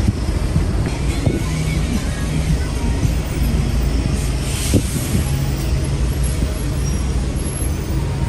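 City street traffic: a steady low rumble of passing vehicles.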